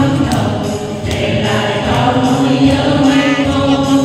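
A mixed group of men's and women's voices singing a song together through microphones, holding long notes.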